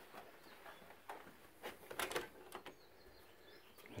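A few faint, short clicks and knocks in an otherwise quiet room as a panelled bedroom door's knob is worked and the door is pushed open.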